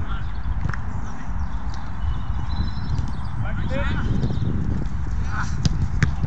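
Wind buffeting an outdoor microphone with a constant low rumble, over players' distant shouted calls on a football pitch. A few sharp knocks stand out, the ball being kicked, the loudest a little before the end.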